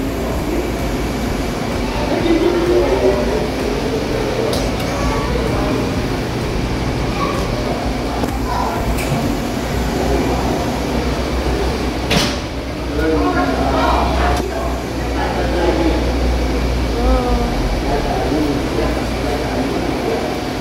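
Indistinct voices of people talking in a busy indoor space, over a steady low machinery hum. One sharp click comes about twelve seconds in.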